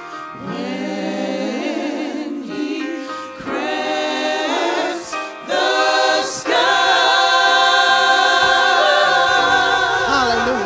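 Gospel music with a choir singing: a few short sung phrases, then a long held chord from about six and a half seconds in, the loudest part.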